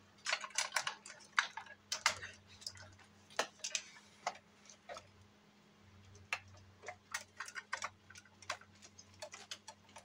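Irregular hard-plastic clicks and knocks from a Buzz Lightyear Power Blaster action figure and its blaster accessory being handled and its parts moved. The clicks come thick and fast in the first couple of seconds, then scattered, with another cluster later on.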